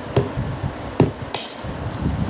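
A metal spoon knocking against a plastic plate while eating noodles: two sharp clicks about a second apart, then a brief, higher scrape.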